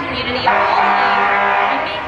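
A car horn sounded in one steady blast of about a second and a half, starting about half a second in, over crowd chatter.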